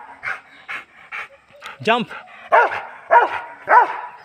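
Rottweiler barking, about four loud barks roughly half a second apart in the second half, after softer huffs in the first half.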